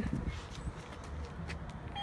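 Quiet outdoor background with a low rumble and a few light footsteps on asphalt.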